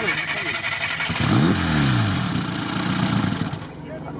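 Carburetted car engine, run with the air-cleaner cover off, catches and runs with a rough roar, revs up and back down once, then fades away near the end as it stalls on the freshly overhauled carburettor.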